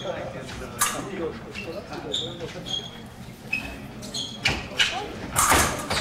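Épée bout on a raised piste: sharp stamps and footwork knocks, with short high metallic rings of the steel blades meeting. Near the end comes a louder burst of noise as a touch is scored.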